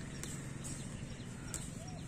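Steady low rumble of road traffic, with a few light clicks and rustles of leafy stems being handled and picked.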